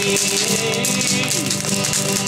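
Live guitar music: a guitar strummed in a steady rhythm in a short break between sung lines.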